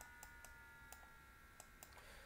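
Near silence with several faint, irregular clicks from the device used to write on screen.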